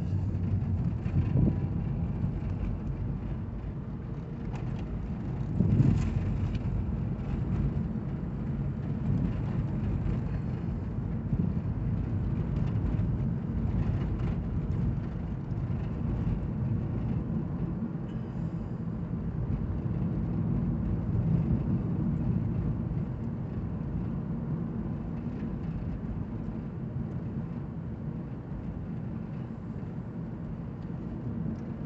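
Steady road and tyre noise heard inside the cabin of a 2014 Toyota Prius V driving at about 20 to 30 mph, with two brief bumps in the first six seconds.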